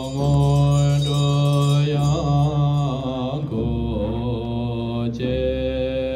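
Tibetan Buddhist monks chanting a mantra together in deep voices, holding long notes that step up and down in pitch, with short pauses between phrases.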